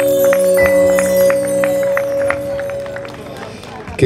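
Closing bars of a slow Italian pop love ballad: a long held note over the final chord, with a light ticking beat about three times a second, fading away about three seconds in.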